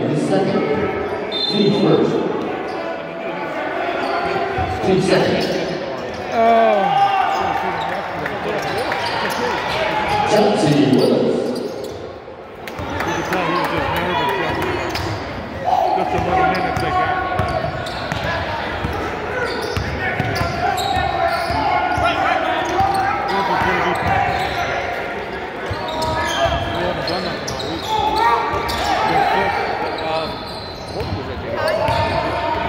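Basketball game sounds echoing in a school gymnasium: players' and spectators' voices, with a basketball bouncing on the hardwood court.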